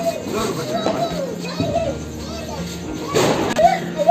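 Children's voices and play over background music, with a brief burst of noise about three seconds in.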